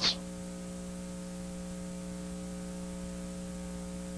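Steady electrical hum made of several held tones, over a faint even hiss.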